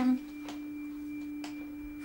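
A steady single held tone, a sustained note of the background music, under a pause in the dialogue, with two faint clicks.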